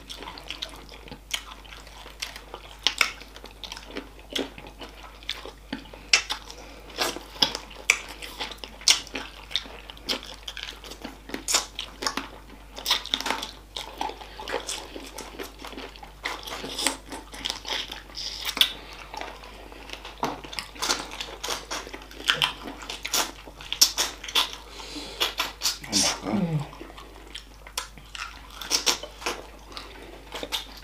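Close-up eating sounds of chicken feet in spicy sauce being chewed and sucked: irregular wet smacks and sharp clicks. A short vocal sound falling in pitch comes about 26 seconds in.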